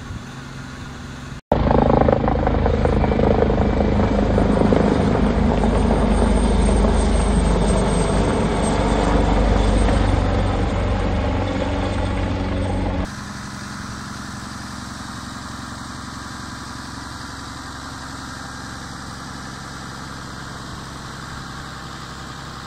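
A fire engine's engine and pump running with a steady hum, broken by about eleven seconds of a helicopter flying over. The helicopter is much louder and starts and stops abruptly.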